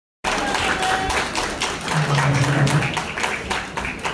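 Audience applause: dense clapping in a hall, with a short low steady hum about halfway through.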